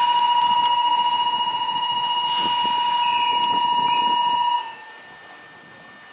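Station platform departure buzzer sounding one loud, steady, high-pitched tone that cuts off suddenly about four and a half seconds in: the signal that the train at the platform is about to leave.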